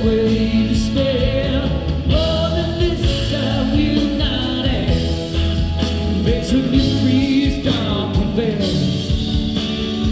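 A live rock band playing, with electric guitars, bass, drums and keyboards under a sung vocal line, the beat carried by steady drum hits.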